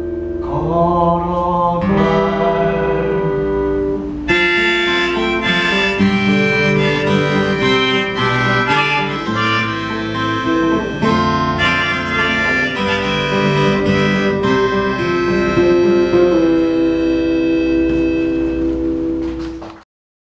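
Live acoustic song on two acoustic guitars: a last sung line in the first couple of seconds, then an instrumental close with a long-held lead melody over the strummed chords, fading out just before the end.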